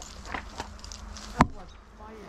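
Insects buzzing close by, with a few short rustles and one sharp, loud click about one and a half seconds in.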